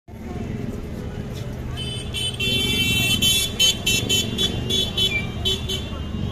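Busy street ambience with crowd chatter and passing traffic, and a vehicle horn tooting in a quick run of short blasts from about two seconds in until near the end.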